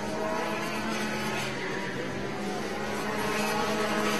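Several Rotax 125cc two-stroke kart engines running at racing speed around the circuit, heard from trackside as a steady mix of engine tones.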